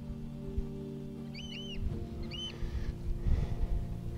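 REM pod proximity alarm going off faintly at a distance: a few short high beeps that rise and fall in pitch, a double beep about a second and a half in and a single one shortly after. A steady low drone runs underneath.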